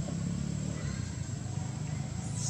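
A steady low rumble with a faint, steady high-pitched whine above it.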